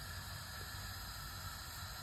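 Tomato passata cooking in a frying pan on a gas hob, heard as a faint, steady hiss with no distinct events.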